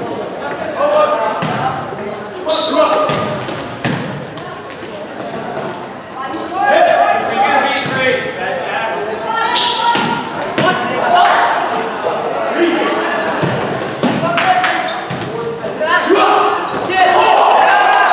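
Volleyball rally in a gymnasium: the ball is struck with sharp smacks again and again, among shouts from players and spectators, echoing in the large hall.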